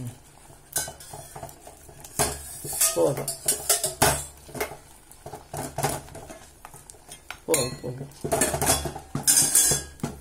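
Wooden spatula stirring ragi (finger millet) flour and water in a stainless steel pot, scraping and knocking against the pot's side in quick, irregular strokes. The strokes come thicker and louder near the end.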